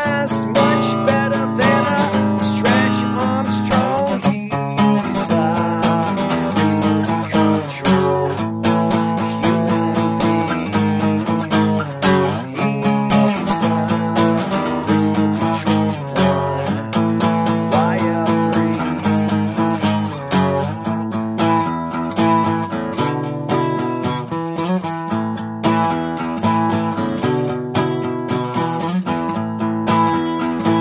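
Acoustic guitar strummed steadily with a running pattern of chords, an instrumental passage without singing.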